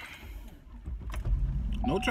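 Car engine rumble heard from inside the cabin, building up about a second in and running steadily, with a click and keys jangling. A power-window motor whine starts near the end.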